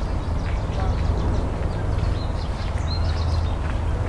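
Ducks quacking now and then over a steady low rumble.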